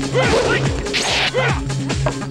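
Fight-scene sound effects: a quick series of swishing whooshes and hits, with a louder swish about halfway through, over background music with a steady low drone.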